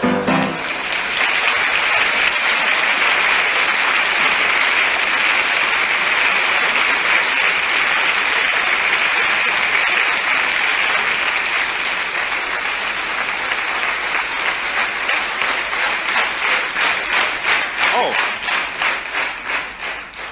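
Audience applause, dense and sustained, turning into evenly spaced rhythmic clapping in unison over the last several seconds.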